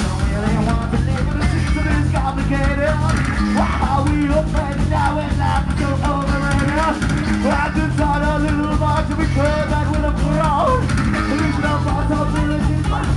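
Rock band playing live at loud, even volume: a driving drum kit and bass under electric guitars and bending melodic lines, with no pause.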